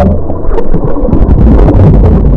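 Loud, muffled churning and bubbling of pool water stirred by swimmers, heard through a submerged camera's microphone as a heavy low rumble with scattered small pops.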